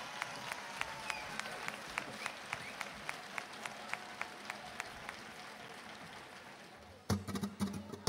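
Outdoor audience applause dying away into scattered single claps. About seven seconds in, a flamenco group abruptly starts the next number with sharp hand-clapping (palmas) and guitar.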